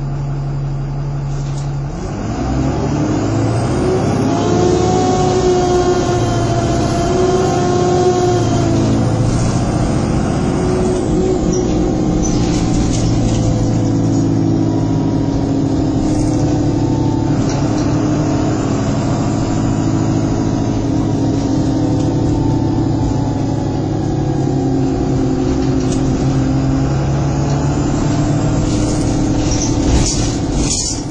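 Bus engine heard from inside the passenger saloon: idling, then pulling away about two seconds in. Its pitch climbs and drops back twice as the gearbox changes up, then it runs steadily at speed.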